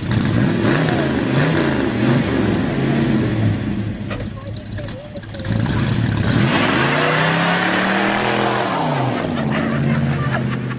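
Car engine revving up and down several times, with one long rev that climbs and falls back in the second half.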